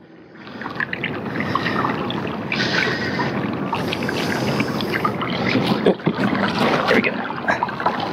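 Water rushing and splashing along the hull of a pedal-drive kayak moving at trolling speed, a steady wash that builds up in the first half second, with a few light knocks in the last two seconds.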